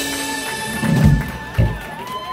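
A live band's held closing chord stops about half a second in. Two low drum hits follow as the song ends, a heavier one about a second in and a short one just after, while the audience claps.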